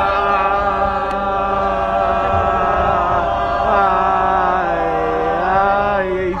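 Voices in a sustained, chant-like held chord that bends and slides in pitch about four to five seconds in.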